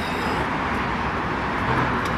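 Steady road traffic noise, an even rumble and hiss.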